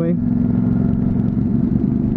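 Honda CTX700's parallel-twin engine running steadily at cruising speed, with wind noise on the rider's camera.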